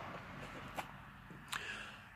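Quiet room tone with two brief faint clicks, one a little under a second in and another about a second and a half in.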